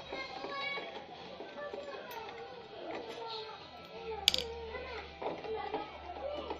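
Background voices, children's among them, talking and playing at some distance. A single sharp click sounds a little over four seconds in.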